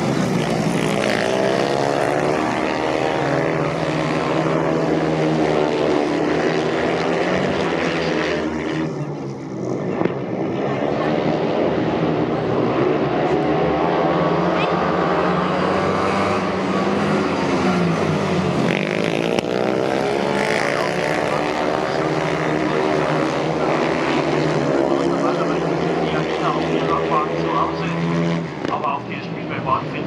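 Four speedway sidecar outfits racing, their engines running at high revs with the pitch rising and falling as they power through the bends and pass, the pack coming round several times.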